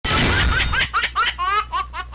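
Laughing sound effect in a TV comedy show's title sting: a burst of noise, then a quick string of short 'ha-ha' laughs, each rising in pitch, over a low hum.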